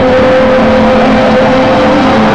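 Very loud live electronic music in a club: one long held synth note, rising slightly in pitch, over a dense buzzing bed.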